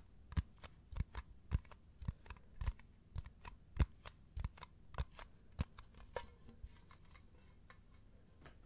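Fingertips and nails tapping on the lid of a round metal tin, in quick irregular taps about three or four a second. The taps thin out and fade after about six seconds.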